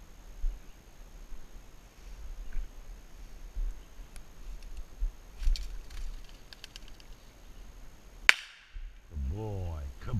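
A pigeon flushes from cover with a quick flurry of wing claps about halfway through, then a single sharp gunshot goes off near the end, the shot fired over the flushed bird for the pointing dog.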